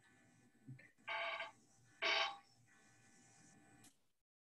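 Two short, faint ringing tones about a second apart, like a phone or device ringing in the background.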